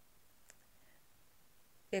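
Quiet room tone during a pause in speech, with a single faint click about half a second in.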